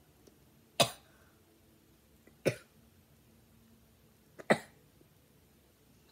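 Three short, sharp coughs about two seconds apart, from a girl with a sore throat.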